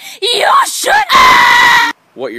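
A person's voice yelling in short swooping cries, then breaking into a loud held scream about a second in that cuts off suddenly.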